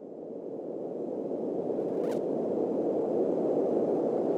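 A low rushing noise that swells steadily louder, with a short swish about two seconds in.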